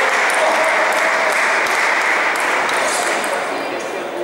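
Busy table tennis hall: celluloid-type balls ticking off bats and tables at several tables at once, over a steady din of voices.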